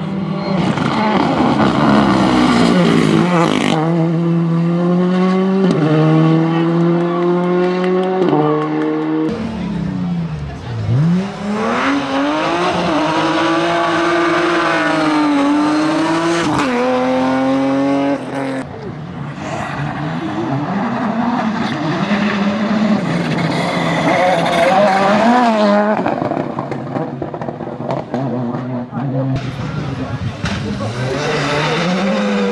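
Rally cars at full throttle on a tarmac stage, one after another. The first car's engine steps up in pitch through several quick upshifts in the opening seconds. Later another car's engine rises and falls in pitch as it goes by, followed by more hard acceleration.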